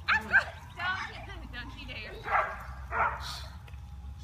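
Young children's high-pitched voices: short squeals and calls in separate bursts, the loudest pair right at the start and more about one, two and three seconds in.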